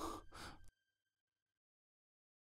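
A man's short breathy exhale, like a sigh, ending within the first second, followed by dead silence.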